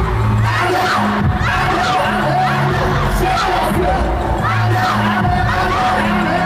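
Arena concert crowd screaming and cheering over loud live K-pop music, with a bass line moving between held low notes, as recorded on a phone from within the audience.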